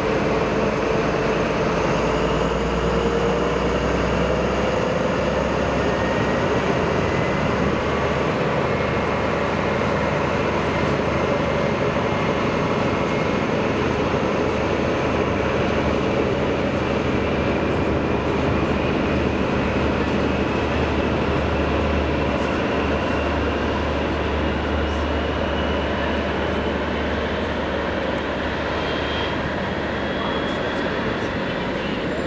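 A diesel train running past the platform, a steady mechanical rumble with an engine note that rises slowly in pitch as it gathers speed.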